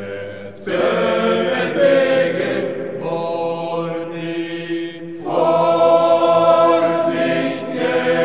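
Male voice choir singing a cappella in sustained chords. After a short breath about a second in, a new phrase begins, and a louder phrase enters about five seconds in.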